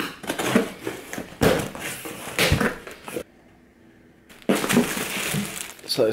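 A cardboard box being opened: a knife slitting the packing tape with sharp scraping and tearing, then after a short silence, rustling of plastic-bagged clothes being handled.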